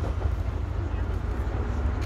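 Low, uneven outdoor background rumble, with a faint voice now and then.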